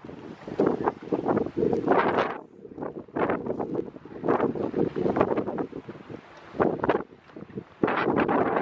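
Wind buffeting the camera microphone in irregular gusts, with footsteps crunching on gravel.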